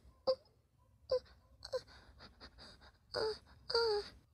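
A man's short moans, five in a row, the last two longer.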